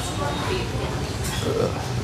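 Indistinct background chatter and steady room noise at an eatery, with no clear voice up front.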